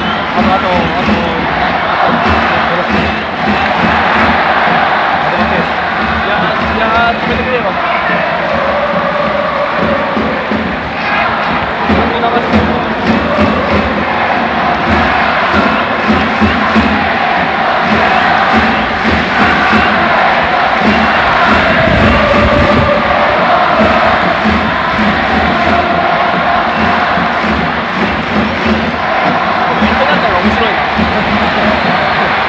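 A large stadium crowd of football supporters singing chants together in unison, a continuous loud mass of voices with cheering mixed in.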